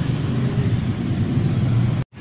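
Steady low engine hum of roadside motor traffic, with a constant drone beneath street noise.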